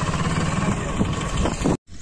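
Motorcycle engine running steadily under way, with wind rushing over the microphone; it cuts off abruptly near the end.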